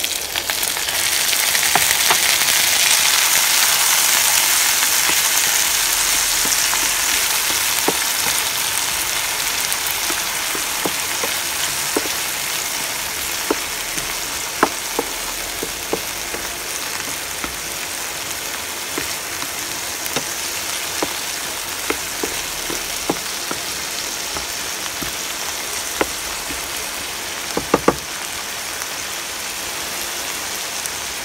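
Diced tomatoes sizzling in hot oil in a frying pan. The sizzle swells about a second in as the tomatoes go in, then slowly dies down. A wooden spatula taps against the pan now and then as it stirs, with a quick double tap near the end.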